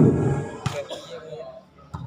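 A man's voice, commentating, trails off at the start. About two-thirds of a second in comes a single sharp smack from the volleyball play, then fainter voices and a small knock near the end.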